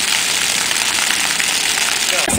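Splash-pad fountain jets spraying and falling onto the wet pad: a steady hiss of falling water.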